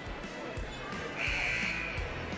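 Basketballs bouncing on a gym floor in irregular thumps, with a short shrill tone a little past halfway through, over the murmur of voices and music in the gym.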